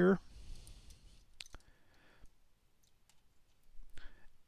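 Watercolor brush and palette being handled while paint is mixed: a soft rustling hiss for the first couple of seconds, two sharp clicks about a second and a half in, and one more small click near the end.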